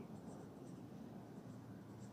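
Felt-tip marker writing on paper, faint.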